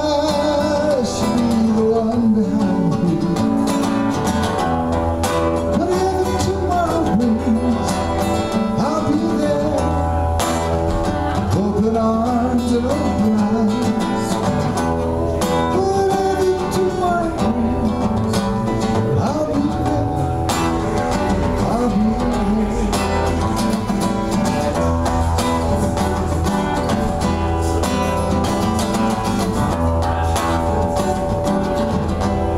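A man singing a song, accompanying himself on an acoustic guitar.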